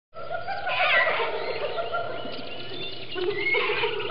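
Dense overlapping animal calls with a few short whistling rises in pitch, sounding dull with no treble.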